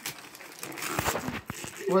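Wrapping paper crinkling and tearing as a present is unwrapped by hand, with a few sharp crackles about halfway through.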